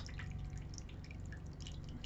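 Water from a small tabletop fountain trickling and dripping, with scattered light drips.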